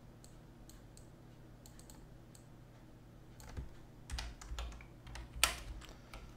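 Typing on a computer keyboard: quiet with a few faint clicks at first, then a run of keystrokes from about halfway through, the loudest about five and a half seconds in.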